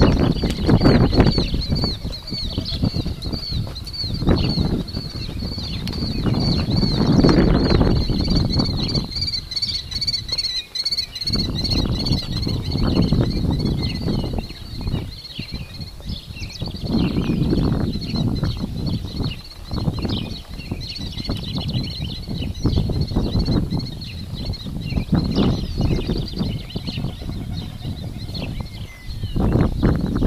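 Small birds chirping steadily in a quick repeating pattern, high-pitched, over a low rumbling noise that swells and fades.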